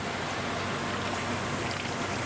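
Steady rushing and splashing of water circulating through rows of aquarium holding tanks and their plumbing, over a low steady hum.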